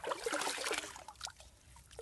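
Wet clay being scooped out of shallow muddy water, with water splashing and trickling off it, loudest in the first second and then a few small wet clicks.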